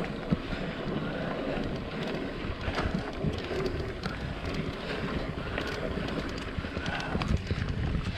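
Mountain bike rolling along a dirt trail: a steady rumble of wind on the microphone and tyres on dirt, with many small clicks and rattles from the bike over the bumps.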